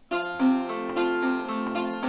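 Long-neck bağlama (uzun sap saz) plucked with a plectrum: a quick, even arpeggio over a held chord shape, cycling E-flat, B-flat, G, E-flat with the strings left ringing between notes.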